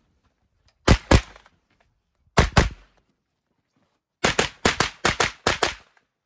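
Rapid 9mm gunfire: two quick pairs of shots about a second apart, then a fast string of about seven or eight shots near the end.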